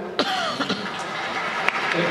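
Audience in a large hall clapping, with one voice letting out a short falling cheer about a quarter second in.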